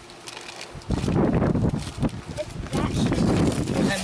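Paper gift bag and tissue paper rustling and crinkling as a present is unwrapped, starting loud and close about a second in.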